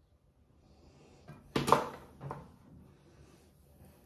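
Two brief knocks, a louder one about a second and a half in and a softer one just after, after a quiet start.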